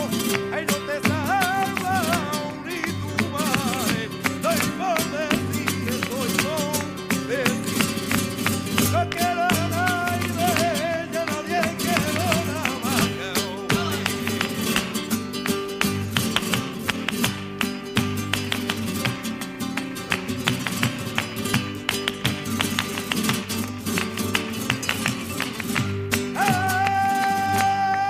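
Live flamenco: a male cantaor sings wavering, ornamented lines over acoustic flamenco guitar and palmas handclaps for about the first twelve seconds. After that the singing drops out and strummed guitar carries on under a dense run of sharp percussive strokes from the handclaps and the dancer's footwork.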